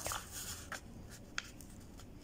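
Sheet of craft paper rustling and rubbing as hands fold it and smooth the fold flat against a hard floor, with a few faint crisp ticks.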